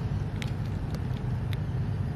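Steady low outdoor rumble with a few faint light ticks.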